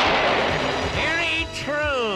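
Cartoon soundtrack: a sudden blast-like sound effect at the start that dies away over about a second, then falling electronic whistling tones, over background music.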